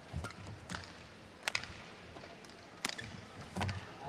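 Badminton rally: sharp cracks of rackets striking the shuttlecock, about one a second, with low thuds of players' feet on the court.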